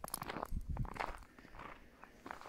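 Footsteps on a snow-covered gravel road, a run of short steps in the first second or so, then fainter.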